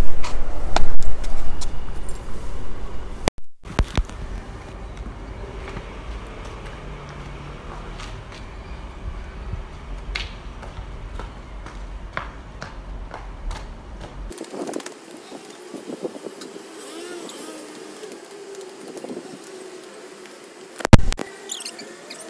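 Faint outdoor street ambience with scattered light clicks, and a low rumble that stops abruptly about two-thirds of the way through. It opens with a couple of seconds of louder handling noise on the microphone.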